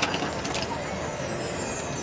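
Steady open-air stadium background noise with no voice, broken by a couple of faint clinks in the first second.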